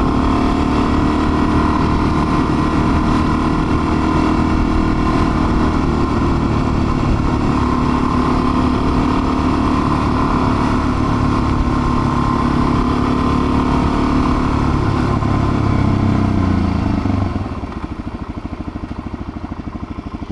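Suzuki DR-Z400's single-cylinder four-stroke engine running steadily at cruising speed, with road and wind noise. About 17 seconds in the engine note falls and the level drops as the bike slows, settling to a quieter idle while stopped.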